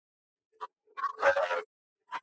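Isolated vocal track separated from a song, with no instruments: mostly silence, a couple of faint blips, then one short wordless vocal sound lasting about half a second just past the middle.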